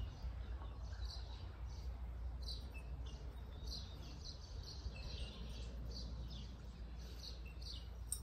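Small birds chirping faintly, short high calls scattered throughout, over a low steady rumble.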